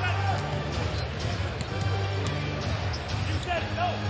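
A basketball being dribbled on a hardwood arena court, over arena music and crowd noise.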